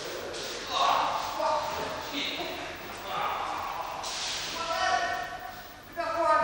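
Indistinct men's voices talking in a large, echoing hall.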